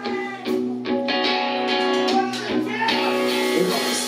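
Live rock band playing an instrumental passage: electric guitars strumming chords over drums, with a brief drop just at the start before the band comes back in about half a second in.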